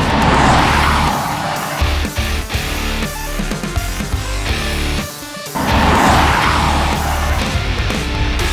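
Loud hard-rock background music with electric guitar, with two rushing whooshes mixed in: one near the start and one about six seconds in.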